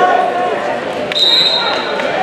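Referee's whistle blown once, one steady high tone of just under a second starting about a second in, restarting the wrestling from neutral; shouting voices run throughout.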